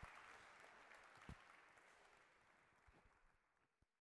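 Near silence: faint applause dying away, with one soft knock just over a second in.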